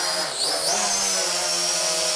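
A Mengtuo X-Drone (M9955) quadcopter's four propeller motors buzz steadily in flight at close range. A high whine dips in pitch and climbs back about half a second in.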